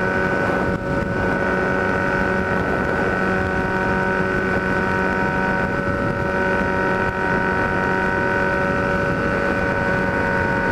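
Kawasaki Z1000's inline-four engine running through a 4-into-1 exhaust, holding a steady note at highway cruising speed, with wind noise on the microphone. The level dips briefly about a second in.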